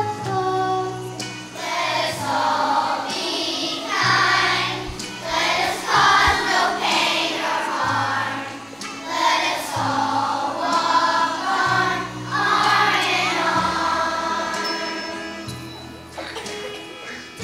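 A choir of young children singing with instrumental accompaniment, the sung phrases rising and falling in loudness over steady low bass notes.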